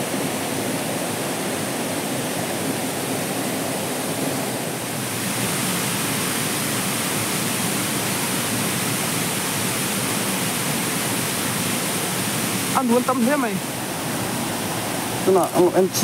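Steady rushing of a waterfall and forest stream, with a voice briefly near the end.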